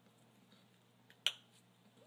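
A single sharp metallic click about a second and a quarter in, from needle-nose pliers squeezing the ball end of a dulcimer string to crush it flat, against faint room tone.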